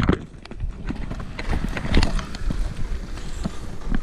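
A horse's hooves clip-clopping on a tarmac lane, irregular knocks over low wind rumble on a moving microphone.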